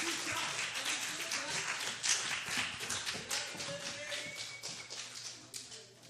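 Audience applauding, the clapping thinning out and fading away near the end, with a few voices murmuring underneath.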